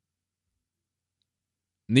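Silence, a pause in a man's reading; his voice starts again just before the end.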